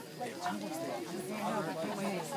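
Several people talking at once, a steady murmur of overlapping voices, with no firework bang standing out.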